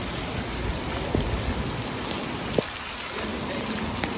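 Steady rain falling on a wet street, with two sharp ticks of single drops, about a second in and a little past halfway.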